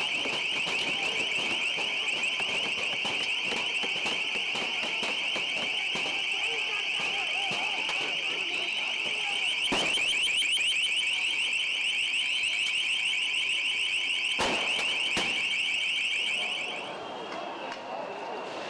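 A loud electronic alarm sounding a rapid, steady warble at one high pitch over the noise of a crowd. Two sharp bangs cut through it, about ten seconds and about fourteen and a half seconds in, and the alarm stops shortly before the end.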